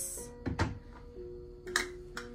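Soft background music with long held notes, over which an electric kettle is set down on a wooden table with a dull thunk about half a second in, followed by a lighter click near the end.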